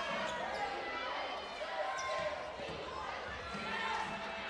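Game sounds of live basketball play in an arena: the ball being dribbled and sneakers squeaking on the hardwood court, over crowd noise and indistinct voices.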